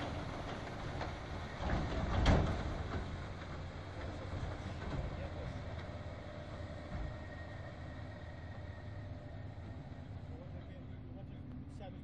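Tractor engine pulling a silage trailer through deep mud, the sound slowly fading as it moves away. A loud bang about two seconds in.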